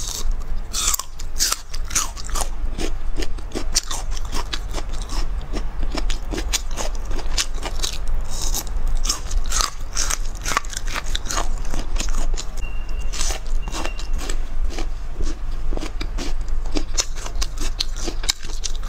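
Close-miked eating: a woman biting and chewing crunchy pieces of spicy braised food, with many irregular wet crunches throughout, picked up by a clip-on microphone held right by her mouth.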